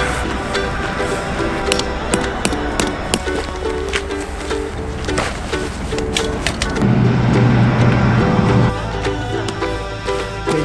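Background music: a repeating melody over percussion, with a deep bass note held for nearly two seconds toward the end.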